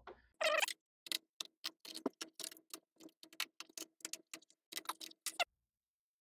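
Small, sharp, rapid clicking, about five clicks a second for some four seconds and then stopping, as a precision screwdriver turns out a bottom-panel screw of a ThinkPad X270 laptop. A brief scrape comes just before the clicking.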